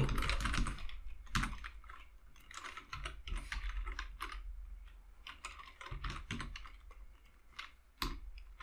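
Typing on a computer keyboard: short runs of keystrokes with brief pauses between them, entering an SQL query.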